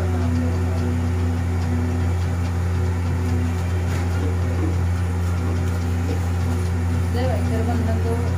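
A steady low hum, with a few fainter steady tones above it, under quiet murmuring voices.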